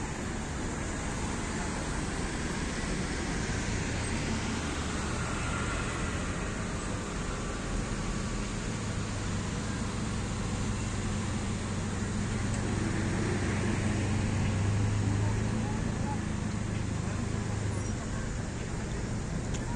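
Town street traffic: a steady hum of engines and tyres that swells to its loudest about three-quarters of the way through, then eases.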